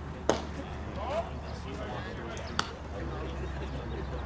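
A baseball pitch smacking into the catcher's leather mitt with one sharp pop about a third of a second in. A second, shorter click comes about two and a half seconds in, with voices in between.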